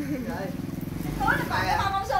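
Speech: voices talking, with a low, rough voiced sound in the middle.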